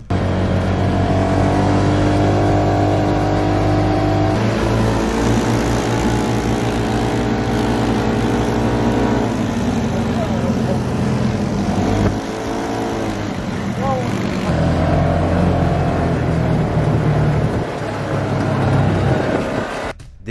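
Side-by-side off-road vehicle (UTV) engines running at speed, a steady engine drone that shifts in pitch several times, with a short rise and fall in revs about twelve seconds in.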